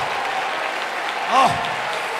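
Congregation clapping, a steady dense patter of many hands throughout, with one short rising-and-falling shout from the preacher about halfway through.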